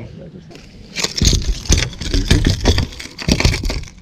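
A burst of close, irregular knocking, thumping and rustling that starts about a second in and lasts nearly three seconds, as a just-landed speckled trout is handled on the fibreglass deck of a small skiff.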